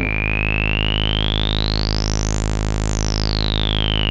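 Random*Source Serge Variable Q VCF in low-pass mode with the resonance turned high, filtering a low sawtooth drone. The cutoff is swept up and back down, so the resonant peak's whistle rises to a high pitch about two and a half seconds in and then falls, picking out the saw's harmonics one by one.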